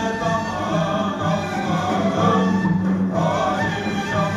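Sufi sema ceremony music: a group of voices singing together over a steady low note that holds throughout.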